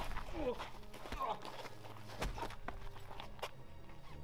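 Footsteps and scuffling on a path, irregular short knocks, with a few brief voice sounds in the first half.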